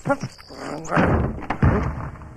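A short laugh, then a rush of noise and a heavy thud about a second and a half in, as of heavy wooden church doors banging.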